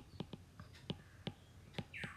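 A series of faint, irregular light taps and clicks from a stylus on a tablet screen during handwriting, about six to eight taps over two seconds.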